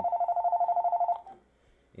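Telephone ringing: one burst of an electronic warbling ring, two tones alternating rapidly, that lasts about a second and then stops.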